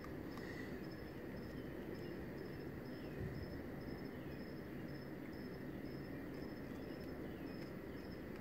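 Crickets chirping: a high, even chirp repeating about twice a second, with a fainter steady trill underneath.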